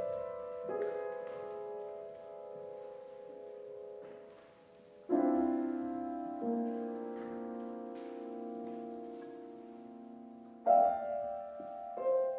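Solo Steinway grand piano playing slow, sustained chords, each struck and left to ring and die away. A soft chord comes just under a second in, a loud chord about five seconds in with another entry soon after, and a second loud chord near the end.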